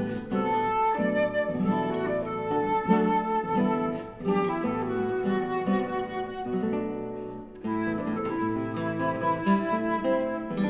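A flute and a classical guitar playing a duet: the flute carries a melody of held notes over plucked guitar chords, with two brief dips between phrases.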